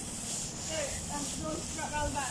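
Steady hiss and whir of an inflatable dinosaur costume's blower fan, with indistinct voices talking over it.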